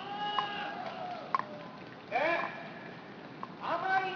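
A person's voice in three short, drawn-out vocal sounds with no clear words, one of them bending up and down in pitch, and a single sharp click between the first two.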